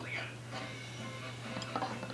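Quiet room with a steady low hum and faint background music. A few faint light clicks come near the end.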